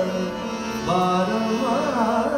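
Indian classical vocal music: a male singer holds gently wavering notes over a tanpura drone with harmonium accompaniment. A new, louder phrase on a higher note begins about a second in.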